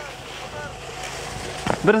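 Steady hiss and rumble of wind on the microphone on an open ski slope, with faint voices. Near the end a man starts shouting.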